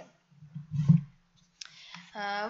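A single loud, low thump about a second in, then a short click with a faint hiss near the end, over a steady low hum.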